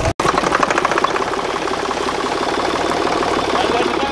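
Diesel tractor engine running steadily at idle, with a fast, even clatter of firing strokes. The sound drops out for an instant right at the start.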